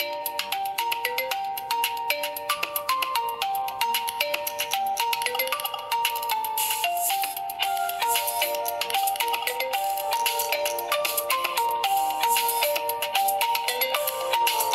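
Alcatel Android smartphone ringing with an incoming call: its ringtone plays a quick, continuous melody of short notes.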